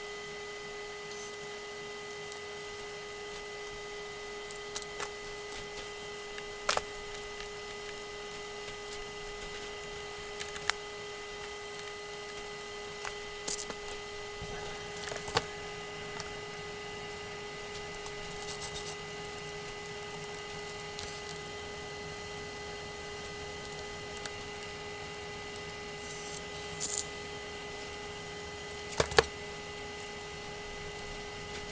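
Scattered small clicks and taps of screws, small tools and axle parts handled by hand while an RC rock crawler's front axle and knuckle are worked on, over a steady electrical hum.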